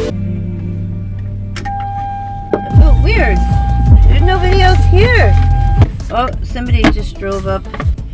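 A voice singing in gliding notes over a low rumble, with a steady high tone held for about four seconds and a run of clicks near the end.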